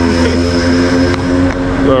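Motorcycle engine running steadily, its even, unchanging tone held at one speed.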